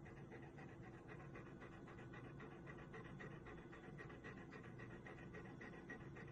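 Golden retriever panting quietly, in a rapid, even rhythm.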